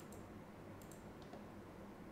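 A few faint computer mouse clicks, some in quick pairs, over a steady low hum.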